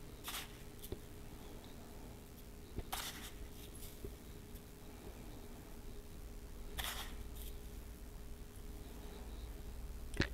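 Cinnamon sugar sprinkled by hand over biscuit dough in a metal Bundt pan: three brief soft hissing rustles a few seconds apart, with a few faint taps, over a low steady hum.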